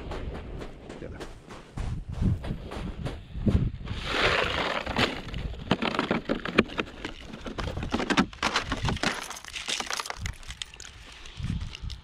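Loose gravel crunching and clattering in irregular clicks and crackles as an RC truck is handled and moved about on a gravel pile, with a denser rush of gravel about four seconds in.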